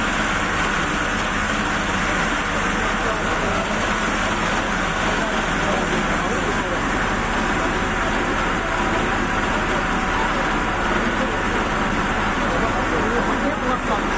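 A fire engine's engine running steadily, a constant drone, with several people talking indistinctly over it.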